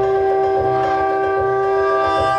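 A long horn blast held on one steady pitch in the dance music, over a regular low drum beat.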